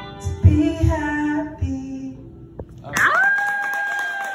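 A woman's voice and a strummed acoustic guitar play the last notes of a song, then about three seconds in a long, high-pitched cheer rings out as clapping begins.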